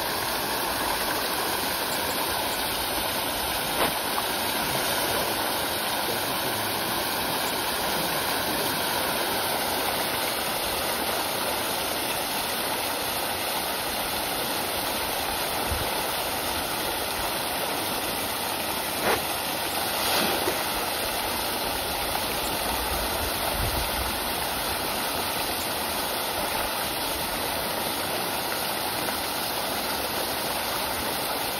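Steady rush of a water jet pouring into a fish pond, mixed with the splashing of a dense mass of fish thrashing at the surface. A couple of brief sharper splashes or knocks stand out, one about four seconds in and one just before the twentieth second.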